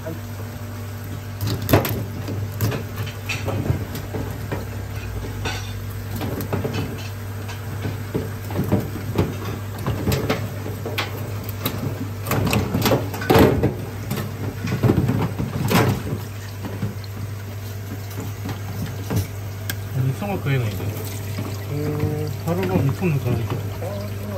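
A knife cutting and cracking the shell of a red king crab in a stainless steel sink: a series of sharp cracks and knocks, busiest in the middle, with water running from a hose into the sink over a steady low hum.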